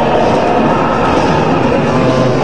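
Loud live electronic music from a rave sound system: a dense, noisy, droning wash with no pauses and no clear beat.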